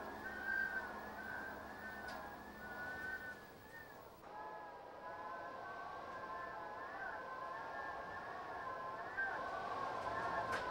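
Wind howling, a wavering high whistle that rises and falls slowly.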